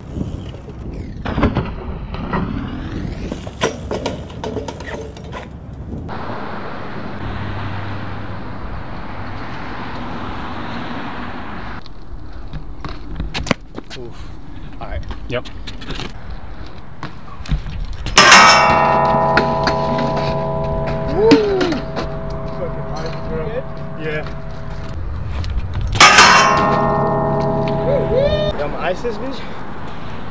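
A metal stair handrail is struck hard twice, about two-thirds of the way in and again near the end, and rings each time with a long, bell-like metallic tone that lasts several seconds.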